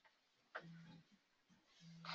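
Near silence: room tone, with a faint click about half a second in and a faint low hum that comes and goes.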